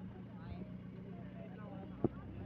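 Faint voices over a steady low hum.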